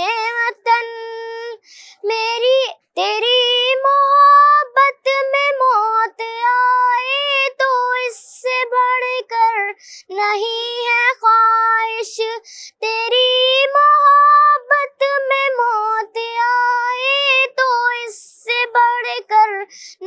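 A boy singing an Urdu patriotic song solo, in held melodic phrases with short pauses between them.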